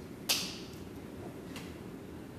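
A chair creaking once, short and sharp, as someone rises from it, followed by a faint click.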